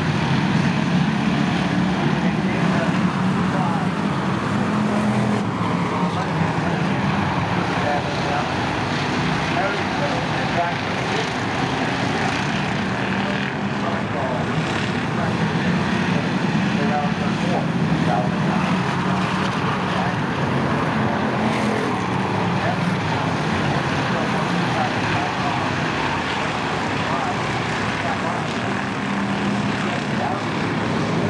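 A field of Pure Stock race cars running together around a short oval, their engines making a steady, dense drone that rises and falls a little as the pack goes round.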